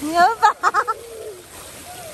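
A young child's high-pitched voice: a rising cry followed by a quick run of short cries, all within the first second.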